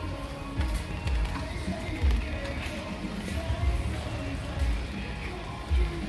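Supermarket background music playing over shop ambience with voices, and irregular low thumps.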